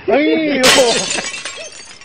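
A breaking-glass sound effect, added in editing, crashes in about half a second in and fades away over the next second. It plays over a man's shout.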